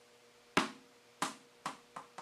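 A baseball-stitched squish ball dropped onto the floor lands about half a second in, then bounces three more times, each bounce lighter and coming sooner than the last.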